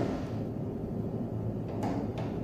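Low steady hum with a single light click near the end, as the knee mill's quill feed handle is taken in hand.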